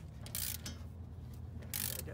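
Hand ratchet clicking in two short spells, about half a second in and again near the end, as it tightens the nut securing an aftermarket upper control arm's uni-ball to the top of the steering spindle.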